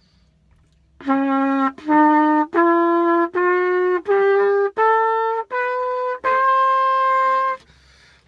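Trumpet playing the D major scale upward, starting about a second in: eight separate notes stepping up, the top D held longest. The tone is a little raspy, which the player puts down to a tired jaw.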